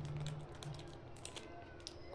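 Faint, irregular light clicks and taps, with a faint low hum in the first half second.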